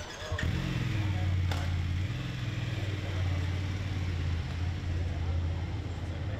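A motor vehicle's engine idling close by: a low, steady hum that sets in abruptly shortly after the start and holds on. There is one short click about a second and a half in.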